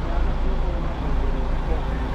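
Steady low rumble of vehicle engines and traffic mixed with the indistinct chatter of people's voices.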